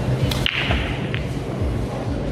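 Pool break shot: a sharp crack as the cue drives the cue ball into the nine-ball rack, then the racked balls smash apart in a short burst of clicking, with one more ball-on-ball click about a second in.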